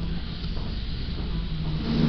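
Steady low rumble of café room noise, with faint indistinct voices in the background.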